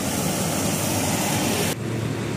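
Road traffic noise on a wet road: a steady rushing noise of passing vehicles that cuts off suddenly near the end, leaving a quieter, lower rumble.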